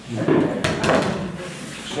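Audience laughing and talking among themselves, with a few sharp knocks about half a second to a second in.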